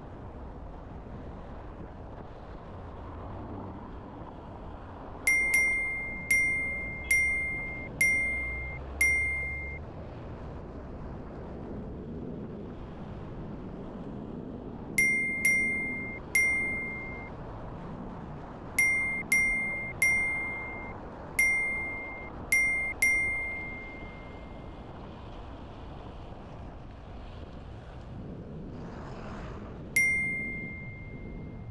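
A short, bright ding sound effect, the same single chime tone each time, each dying away quickly. It sounds about fifteen times in quick clusters, apparently ticking up an on-screen vehicle counter, over steady street traffic and wind noise.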